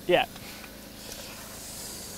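Faint steady outdoor background noise, with a soft high rustle building late on.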